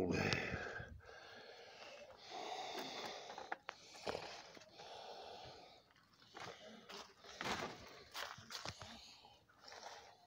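Water swishing and sloshing in a plastic gold pan as it is swirled, in irregular bursts with a few light clicks from the pan being handled.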